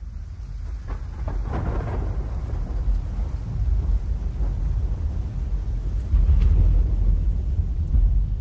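Thunderstorm: a deep continuous thunder rumble over rain. It fades in and grows louder, with a few sharp cracks about one to two seconds in and again around six and a half seconds.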